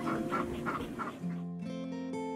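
Short, rhythmic puffs of breath, about three a second, from a Nigerian dwarf kid goat snuffling and nibbling at a hand close to the microphone. About halfway in, acoustic guitar music starts.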